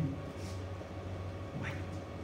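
Classroom room tone in a pause of speech: a steady low hum, with a man saying a single word near the end.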